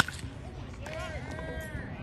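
Baseball bat hitting a pitched ball: one sharp crack right at the start, ringing briefly. About a second later, voices call out.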